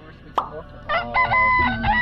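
A short pop, then a rooster crowing in a few short notes and one long held note that steps down in pitch, laid over the footage as a dawn cue.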